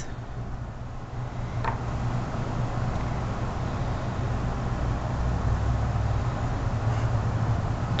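A steady low hum and rumble of background noise that grows slowly louder, with one faint, brief squeak about one and a half seconds in.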